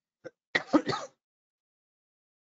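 A man clearing his throat once, a rough burst of about half a second starting about half a second in, just after a faint click.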